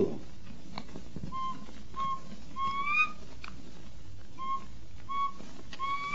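Whistled imitation of the jaó (undulated tinamou) call: two short level notes followed by a longer rising note, given twice.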